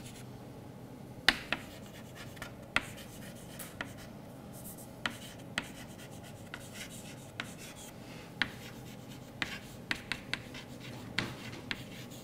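Chalk writing on a blackboard: a run of sharp, irregular taps and short scratches as letters are written.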